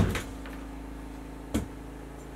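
Aluminium Vanguard Alta-Pro 263AT tripod being handled as its legs are spread and set: a sharp knock right at the start and another about a second and a half in.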